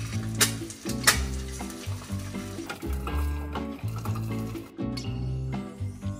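Eggs frying in a hot pan on a gas stove, with a sizzling hiss, under steady lo-fi background music. There are two short, sharp knocks in the first second or so.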